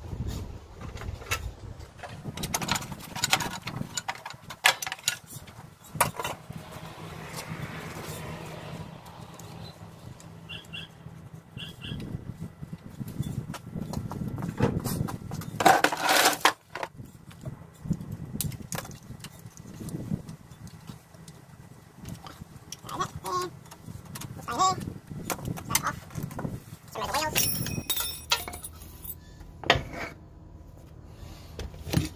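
Scattered metallic clinks, knocks and rattles of hand tools and loose bolts while a ride-on mower's rear end is unbolted, with a louder ringing metal clatter about halfway through. Near the end a rear wheel is worked off its axle.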